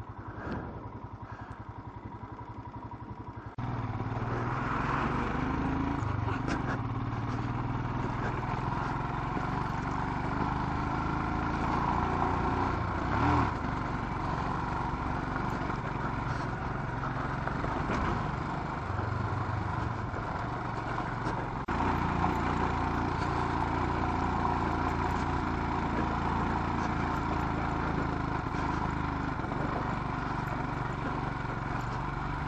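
Royal Enfield Himalayan's single-cylinder engine running as the motorcycle rides along. It gets suddenly louder about three and a half seconds in and then stays steady, with one brief louder knock near the middle.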